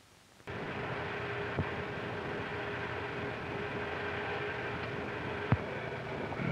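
Optical soundtrack noise from a vintage 16mm film print: a steady hiss with a faint steady tone that starts suddenly about half a second in. A small click comes a second later and a sharp pop near the end, the kind a splice or dirt on the track makes.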